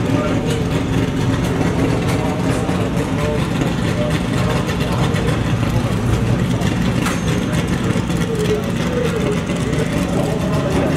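Steady engine noise with distant voices mixed in. It runs at an even level throughout, with no revs.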